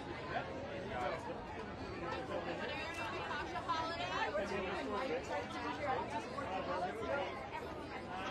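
Chatter of many people talking at once, overlapping voices with no single one standing out.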